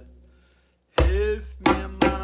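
Djembe hand strokes played slowly. The ring of one stroke dies away to near silence, then two new strokes land about two-thirds of a second apart in the second half, each ringing briefly.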